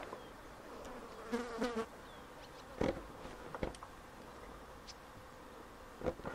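A flying insect buzzing close past, a wavering buzz lasting about half a second, starting about a second and a half in, over a faint steady drone. Two sharp snaps or clicks come near the middle.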